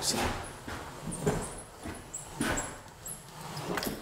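Automatic drywall flat box pushed along a ceiling seam on its extension handle, under heavy pressure to force joint compound out: faint scraping of the box over the drywall, with a few brief, faint high squeaks.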